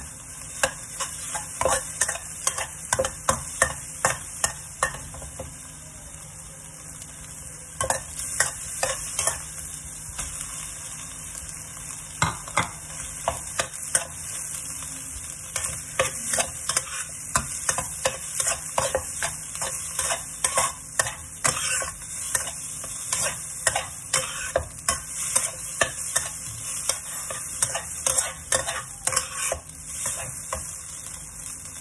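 Metal spatula scraping and knocking against a wok as salmon, egg and rice are stir-fried, over a steady sizzle. The strokes come in quick runs, with a short pause about five seconds in.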